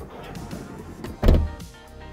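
A van's sliding side door rolling shut and closing with one heavy thud about a second and a quarter in.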